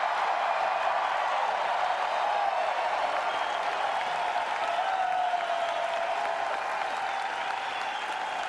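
A large crowd applauding and cheering, a steady wash of clapping with voices mixed in.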